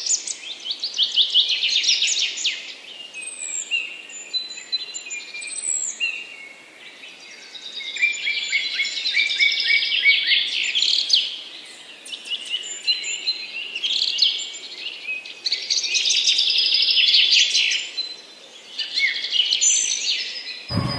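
Many birds chirping and singing at once, a dense chorus of overlapping quick chirps and trills that swells and eases, dipping twice.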